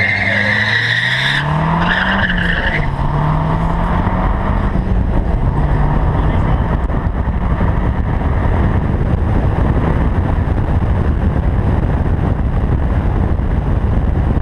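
Mazdaspeed 3's turbocharged 2.3-litre four-cylinder launching at full throttle: the engine note climbs, dips at an upshift about two seconds in, then climbs again, with a high squeal over the first three seconds. From about three seconds in, heavy wind rush over the outside-mounted microphone all but drowns the engine.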